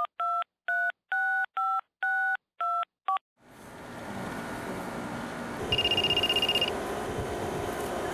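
Telephone keypad tones: about eight two-tone beeps over roughly three seconds as a number is dialled. Then a steady background hum, and a little before the end a brief high ringing tone lasting about a second.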